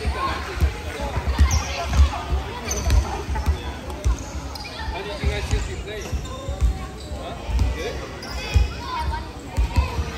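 Basketballs bouncing on a wooden court in a large sports hall, an irregular run of low thumps, with voices chattering over them.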